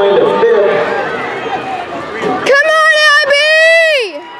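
Crowd murmuring, then about two and a half seconds in a spectator yells a long, loud, high-pitched cheer, broken briefly in the middle and dropping in pitch as it ends.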